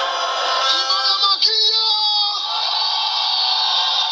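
Voices singing through a public-address system with held, wavering notes, with a crowd shouting along.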